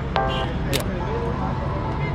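Urban background: a steady low traffic rumble with brief indistinct voices, and one sharp click a little under a second in.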